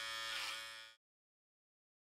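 Electric hair clippers buzzing steadily, then cutting off suddenly about a second in, followed by silence.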